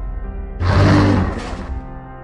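A harsh monster roar sound effect, lasting about a second and starting about half a second in, over sustained background music.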